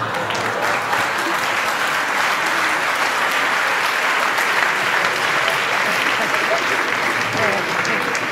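Theatre audience applauding, a steady, even clatter of clapping that holds at one level throughout.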